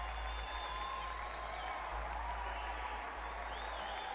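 Concert audience applauding after a live rock song, a dense even clapping with a few high whistles through it, over a steady low hum.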